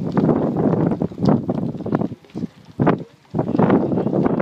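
Wind buffeting the microphone in uneven gusts, dropping away briefly twice after about two seconds.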